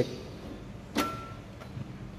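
A single sharp plastic click about halfway through, with a brief ring after it: the espresso machine's water tank latching into place, which tells that it is fully seated against its inlet valve.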